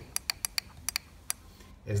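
Light, sharp clicks, about seven at uneven spacing in the first second and a half, of a Phillips screwdriver tip tapping against the switch in its hole in a humidifier's plastic base.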